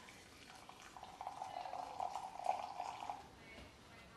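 Hot water poured in a thin stream from a gooseneck kettle into a glass measuring cup: a faint trickling pour with a steady ringing note through the middle, easing off before the end.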